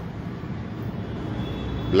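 Steady low rumble of urban background noise, like distant city traffic, in a pause between words.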